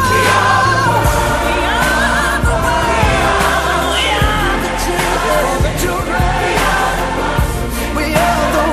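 A pop song with singing over bass and drums; a singer holds a long wavering note for about the first second before the vocal line moves on.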